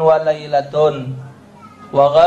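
A man's voice reciting Arabic text through a microphone, in drawn-out, sing-song syllables that trail off about a second in.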